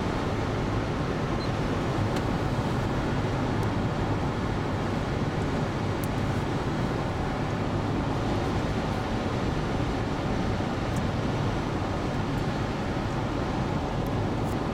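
Steady road noise inside the cabin of a 2003 Acura MDX cruising at highway speed, with a few faint ticks.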